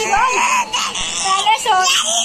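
Young child crying and whimpering, a wavering high-pitched wail, upset after being hit by another child.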